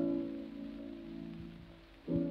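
A piano chord, struck just before, ringing and slowly fading: one of the closing chords of the piano part at the end of the song. An old 1940 recording, with faint hiss and a low click or two from the disc surface.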